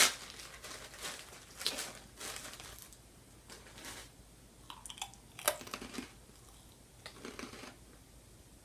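Crunchy cracker-like chip being chewed: irregular crunches, loudest at the start and sparser toward the end.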